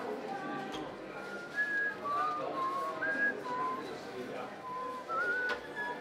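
A clear whistled tune of short held notes stepping up and down, with a murmur of voices behind it.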